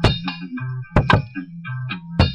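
Sampler drum beat: sharp metallic clanging hits, one at the start and a quick pair about a second in, over a repeating low bass note and ringing tones.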